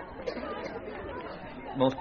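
Indistinct chatter of many voices, a low even murmur with no single speaker standing out; a man starts speaking near the end.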